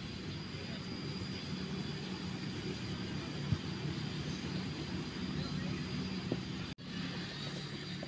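A steady low engine drone from a motor running nearby, over open-air background noise. A single sharp knock comes about three and a half seconds in, and the sound cuts out for an instant near the end.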